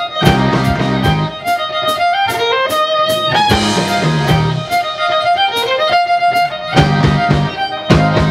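Live Celtic rock band playing: a fiddle carries the melody in repeated rising runs over electric guitars and a drum kit.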